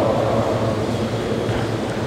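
Steady rushing background noise of a large room, with no voice in it.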